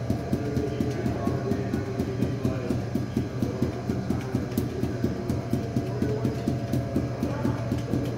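Juggling balls thrown down and bouncing off a hard floor in a steady rhythm, about four bounces a second, during five-ball force-bounce juggling, over a steady low hum.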